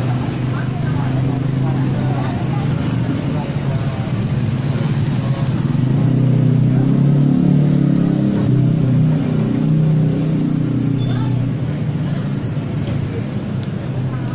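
A motor vehicle engine running close by: a steady low drone that swells in the middle and eases off toward the end.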